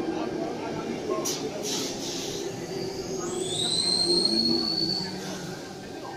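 Sydney Trains Tangara electric train running along an underground station platform, a steady rumble of wheels on rail. About three seconds in, a high whine rises and then holds for about two seconds before fading.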